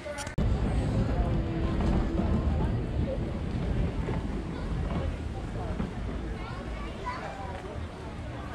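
Chatter of people walking past, over a low rumble that is loudest in the first few seconds and eases off after that.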